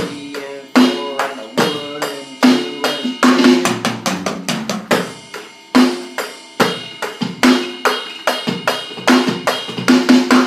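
Electronic drum kit played as a steady beat of kick, snare and cymbals, with a run of sixteenth-note single strokes on the toms as a fill every second bar.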